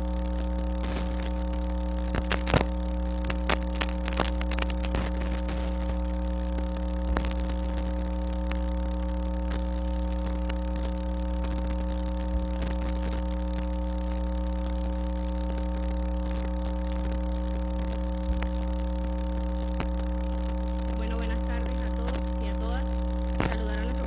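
Steady electrical mains hum on an open microphone feed, with scattered sharp clicks and knocks, most of them in the first five seconds.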